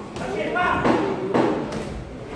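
Voices calling out in an echoing hall, over a few dull thuds from gloved punches landing in a boxing exchange.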